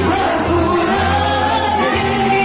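Greek folk dance music with singing, played loud and without a break.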